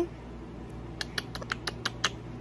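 A quick run of about six light kissing smacks, lips pressed repeatedly to a baby's cheek, in the second half.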